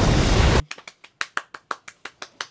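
A cartoon explosion with rumbling noise cuts off suddenly about half a second in, followed by one person's quick hand claps, about six or seven a second.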